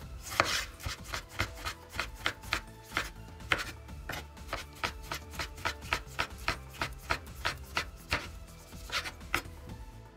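Kitchen knife slicing a tomato thinly on a wooden cutting board: a steady run of blade taps on the board, about three to four a second, stopping shortly before the end.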